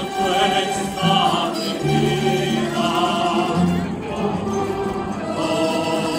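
A choir singing a Spanish devotional hymn (gozos) in held notes, accompanied by a plucked-string ensemble of guitars and smaller lute-type instruments.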